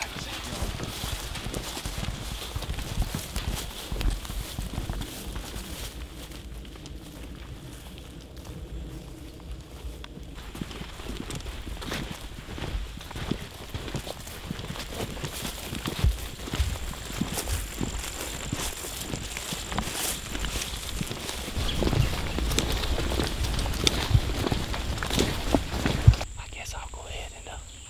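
Footsteps of a person walking in rubber boots through grass and along a dirt track, an irregular run of soft steps with gear and clothing rustling.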